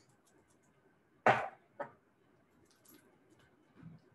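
Two brief knocks about half a second apart, the first much louder, from small glass essential-oil bottles being handled on a kitchen counter, with a few faint clicks near the end.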